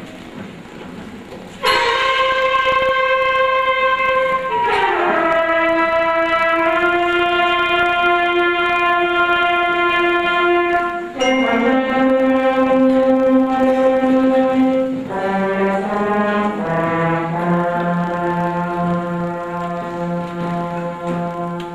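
Middle-school concert band, brass to the fore, playing long sustained chords at the opening of a medley of horror-movie themes. The band comes in suddenly about two seconds in, and the chords shift several times, sliding down into new ones around five, fifteen and seventeen seconds.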